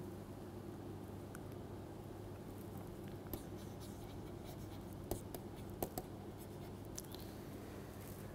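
Faint taps and scratches of a stylus writing on a tablet, with a few sharper clicks in the second half, over a low steady hum.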